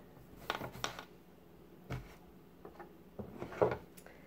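A few short knocks and rubs of objects handled on a wooden tabletop and a slatted placemat, as a marker is set down and scissors are picked up.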